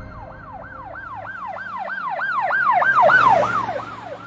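Fast yelping siren, a rapid rise-and-fall wail repeated about three and a half times a second, growing louder and then falling away near the end.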